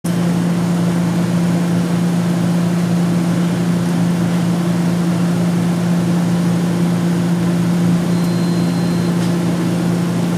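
Steady electrical hum from a 5 kW induction heating system running while its copper coil heats a carbide tip, with a strong low tone and a fainter tone above it. A thin high whine sounds for about a second near the end.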